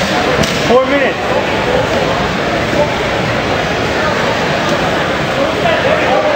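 Indistinct crowd chatter and calls from many voices echoing in a large hall, with a couple of sharp smacks in the first second.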